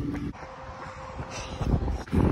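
Wind buffeting a handheld phone's microphone during an outdoor run, an uneven low rumble.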